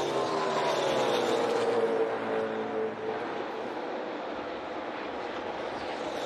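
NASCAR Cup stock car's V8 engine at racing speed, its note falling steadily in pitch over about three seconds as it goes by, then fading into steady track noise.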